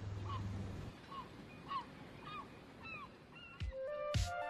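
A bird calling: a run of about six short calls that bend in pitch, a little over half a second apart. Under the first second there is a faint low steady hum. Music with low beats comes in near the end.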